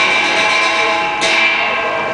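Live Chinese opera (ngiw) accompaniment: sustained instrumental tones, with a single percussion crash about halfway through that rings on afterwards.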